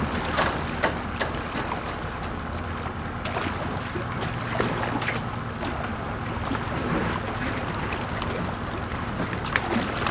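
A boat engine running steadily under wind and water noise. Sharp clicks and clanks come from a wire lobster trap being handled in the first couple of seconds, and there are a few more near the end.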